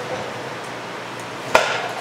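A single sharp metallic clank from a hand tool being handled or set down, about one and a half seconds in, ringing briefly.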